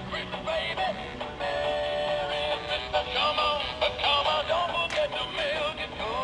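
Knock-off animated plush reindeer toy with a spinning neck, playing a recorded song with male singing through its built-in speaker.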